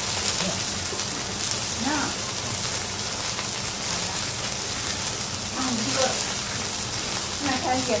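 Food frying on a hot cooking surface: a steady sizzle with fine crackles, with faint voices at a few moments.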